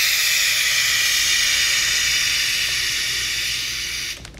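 Compressed carbon dioxide gas hissing steadily out of a tube as it fills a plastic zip-top bag. The hiss eases a little toward the end and stops right at the end.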